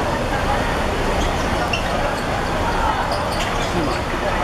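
Ambience of an outdoor five-a-side football match: distant calls from players and onlookers and a few faint ball kicks over a steady low background rumble.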